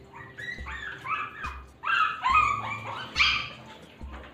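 Two-month-old Shih Tzu puppy crying in a string of short, high-pitched cries while being washed, loudest about halfway through and again near the end.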